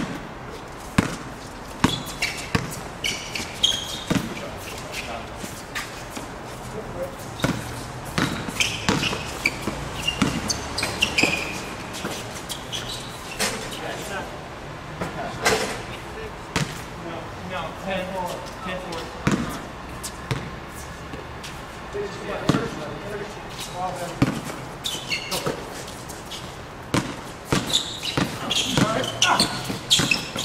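A basketball bouncing on a hard outdoor court in irregular runs of dribbles and single bounces, mixed with players' voices calling out during play and a short shout near the end.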